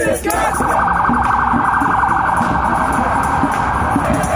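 Electronic siren sounding in a rapid warble, starting just after the start and cutting off suddenly at the end, over low crowd noise.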